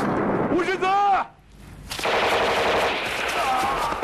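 Rapid machine-gun fire, broken about a second in by a woman's shout. The firing drops out for about half a second and starts again about two seconds in.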